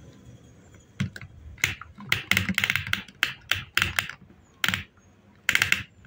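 Plastic parts of a toy cement mixer truck clicking and rattling as they are handled and pulled apart: about a dozen short, clattery bursts in quick succession.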